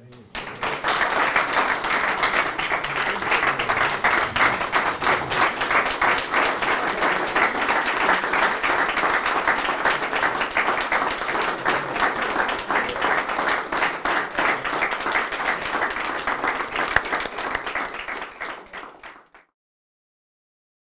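Audience applauding, a dense steady clapping that starts right after the speech ends and cuts off suddenly near the end.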